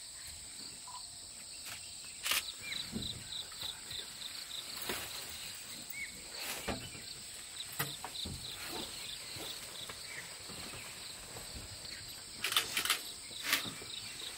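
Forest insects calling: a steady high whine with a quick, even run of chirps over it. A few sharp clicks break in, several close together near the end.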